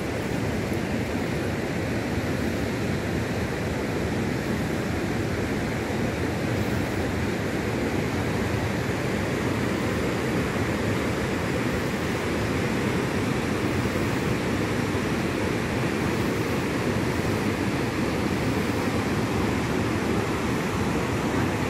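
The Rhine Falls: a steady rush of white water pouring over the falls, with no change throughout.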